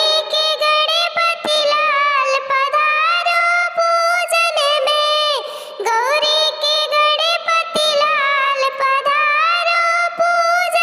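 A devotional folk song to Ganesh sung in a high, pitch-raised cartoon voice, with long held notes and a brief pause about halfway through.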